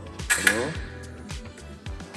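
Background hip-hop style music with a steady beat and vocals. About half a second in, one sharp metallic clink as a sabre blade strikes the metal mesh mask of a fencing mannequin.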